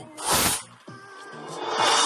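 Cartoon soundtrack: a short burst of hissing noise, like a whoosh sound effect, about half a second in, over faint background music.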